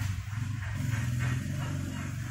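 A man's low voice humming, in three short phrases, with no clear words.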